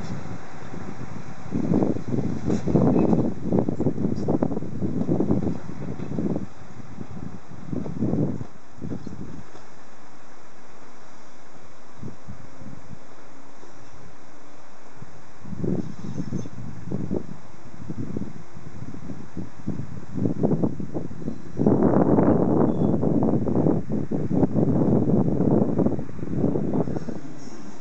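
Gusts of wind buffeting the microphone in uneven surges, with a calmer stretch midway and the strongest gusts near the end.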